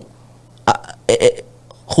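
A man's voice making two short wordless vocal sounds about half a second apart during a pause, over a faint steady low hum.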